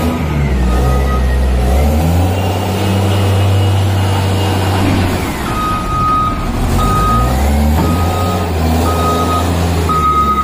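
A Hyster reach stacker's diesel engine running under load, speeding up about two seconds in and settling back about five seconds in, while its reversing alarm beeps at a steady pace, pausing for a few seconds in between.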